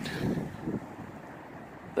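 Wind on the microphone: a low, even rumble, stronger for the first half second, then settling to a quieter steady rumble.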